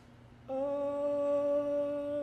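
Barbershop quartet singing a cappella: after a brief silent breath, a soft sustained note starts about half a second in and is held steady.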